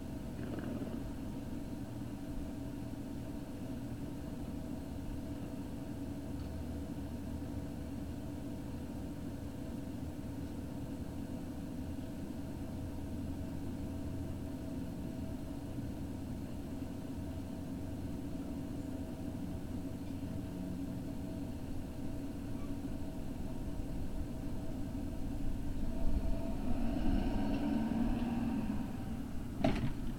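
Steady low rumble with a faint, even hum. About three-quarters of the way through it grows louder, with a brief pitched sound, followed by a few sharp clicks near the end.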